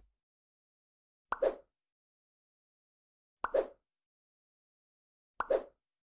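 Three short, identical pop sound effects, evenly spaced about two seconds apart, with dead silence between them.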